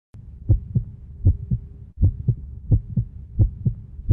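Heartbeat sound effect: a steady lub-dub of paired low thumps, five pairs about three-quarters of a second apart (roughly 80 beats a minute), over a low hum with a faint steady tone.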